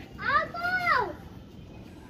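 A child's high-pitched shout: one drawn-out call, about a second long, that rises and then slides down at the end.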